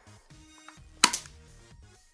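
A single sharp snap of the compact .45 airsoft pistol firing one BB, about a second in.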